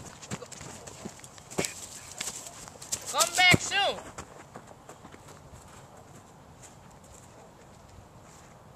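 A short, high, whinny-like call with a quavering pitch, under a second long, about three seconds in. It is the loudest sound here. Before it come a few sharp crackles, like footsteps on dry brush.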